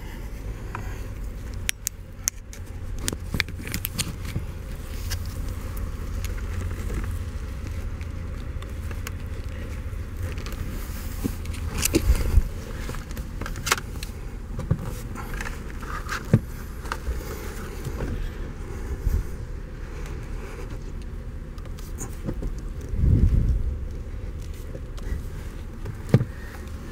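Scattered clicks, knocks and scrapes as a loosened steering column and its trim are shifted by hand, with a louder handling noise about halfway through and another near the end, over a steady low rumble.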